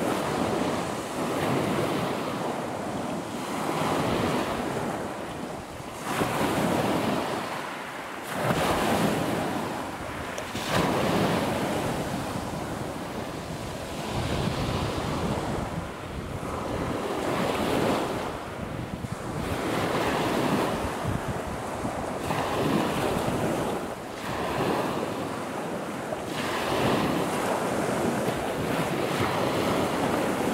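Wind-driven sea waves washing in, swelling and falling every two to three seconds, with wind buffeting the microphone.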